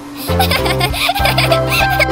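A baby-like giggle, starting about half a second in, from the cartoon baby kitten, over cheerful background music with a steady beat.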